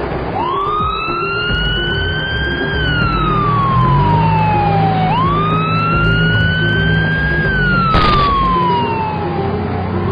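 Emergency-vehicle siren in a slow wail, rising and falling twice, over background music with a repeating bass figure. A brief noise burst comes about eight seconds in.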